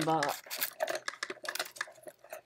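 A quick, irregular string of light clicks and taps as small objects are handled and rummaged through close to the microphone, after a short spoken "uh" at the start.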